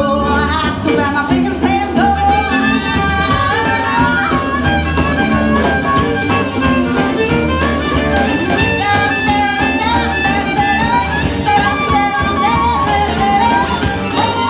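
Live blues band: a violin plays a gliding, bending lead melody over electric bass and drums.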